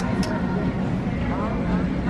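Clothes hangers clicking on a metal store rack as garments are pushed along, twice right at the start, over a steady low hum of the store.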